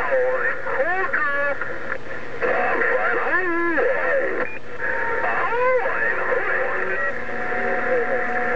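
Voices of other stations coming through the speaker of a President HR2510 10-meter transceiver tuned to 27.085 MHz, hard to make out, over a steady hiss of static.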